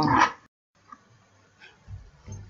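A woman's voice trailing off at the end of a word in the first half second, then near silence with a few faint low knocks.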